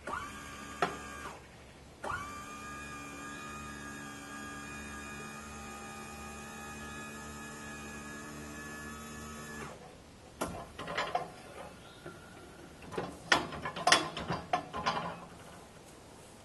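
A small electric motor runs with a steady whine, briefly at first and then for about eight seconds before stopping abruptly. It is followed by a series of irregular metal clanks and rattles.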